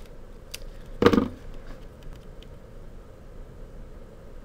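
Quiet handling of black masking tape on a plastic transparency: the roll being moved and a strip pulled and laid down, with faint ticks and one brief louder rustle about a second in.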